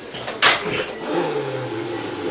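Cat hissing once, sharply, about half a second in, then a low growl that slides down in pitch.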